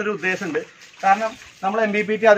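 Speech only: a man talking, with short pauses.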